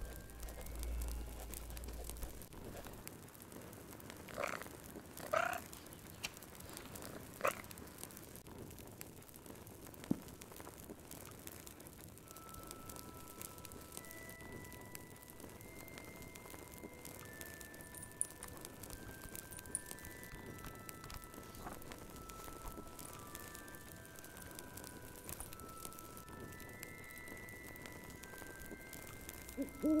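Fireplace crackling steadily, with a few short chirping sounds about five seconds in. From about twelve seconds in, soft sustained music notes play over it, and an owl hoots right at the end.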